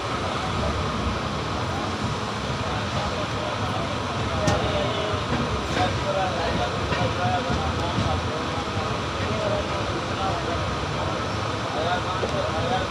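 A moving train heard from aboard: a steady rumble of wheels running on the rails, with voices faintly in the background.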